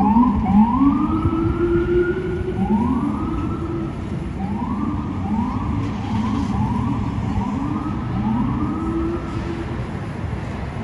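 Electronic emergency-vehicle siren sounding in repeated rising sweeps that level off and break, some long and some quick, over city traffic noise.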